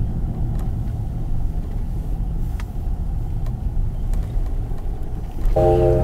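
Road noise heard from inside a moving car's cabin: a steady low rumble of tyres and engine. Near the end it cuts abruptly to a steadier hum with a held tone.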